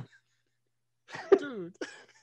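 Near silence, then about a second in a man's single short burst of laughter, falling in pitch and sounding like a cough, muffled by a hand over his mouth.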